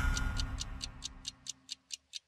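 Clock-like ticking sound effect of a TV show's intro theme, about five sharp ticks a second, over the dying tail of the theme music.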